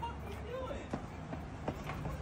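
City street background: a steady low hum with faint distant voices and a couple of short sharp clicks.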